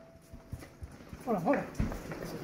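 Field audio of a raid: a short call about one and a half seconds in, then heavy thumps and quick footsteps on concrete as men run out.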